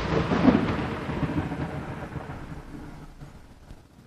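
Rain-and-thunderstorm sound effect, a low rumble with the hiss of rain, fading steadily away.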